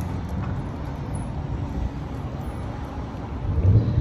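Steady low outdoor rumble, with a louder swell just before the end.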